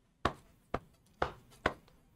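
Four sharp hand strikes, evenly spaced about half a second apart, likely slow claps.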